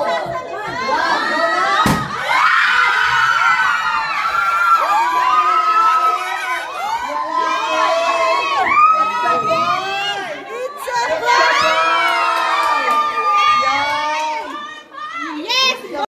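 A group of children shouting and cheering together, many high voices overlapping, with a single sharp bang about two seconds in.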